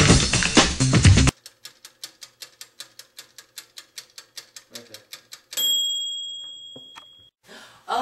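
Drum-heavy music cuts off about a second in. A toaster oven's clockwork timer then ticks rapidly, about six ticks a second, and ends in a single ring of its bell that slowly dies away, signalling that the timer has run out and the cooking is done.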